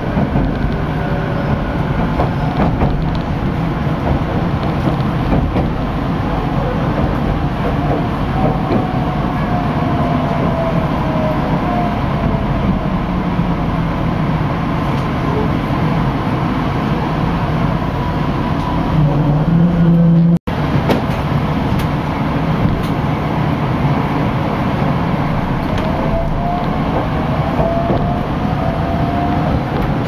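Electric local train running, heard inside the passenger car: a steady rumble of wheels on rails with a faint whine that falls in pitch near the middle and rises again near the end. The sound cuts out for a moment about twenty seconds in.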